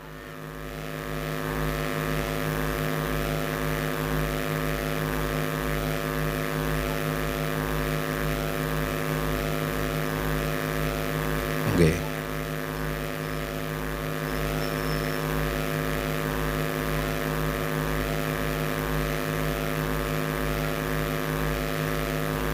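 A sustained chord held on an electronic keyboard through the PA, several steady tones that swell in over the first two seconds and then hold unchanged, with a slow pulsing low note beneath. About halfway through, a brief man's voice slides through it.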